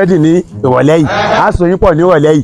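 A man's voice, loud and almost unbroken, with a quavering, wobbling pitch.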